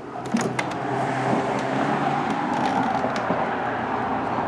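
A couple of clicks from the balcony door opening, then a steady sound of road traffic from the street below.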